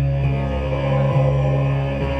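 Live band music in a pause between sung lines: a sustained low keyboard drone under held chords.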